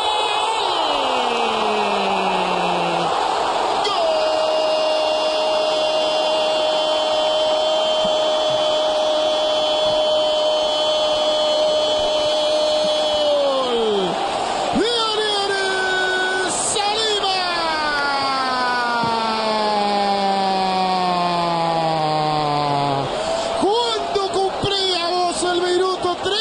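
A Spanish-language football commentator's drawn-out goal cry: a falling call, then one note held for about ten seconds that drops off, then several long falling calls, over stadium crowd noise.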